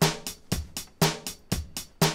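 Teenage Engineering OP-Z playing back a sequenced loop of sampled drums: hi-hat on steady eighth notes, about four strokes a second, with bass drum on beats one and three and snare on two and four.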